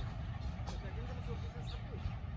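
Faint, distant voices over a steady low rumble.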